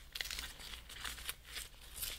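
Faint, irregular crinkling and small crackles of a paper envelope being handled while a stuck-on sticker seal is peeled off.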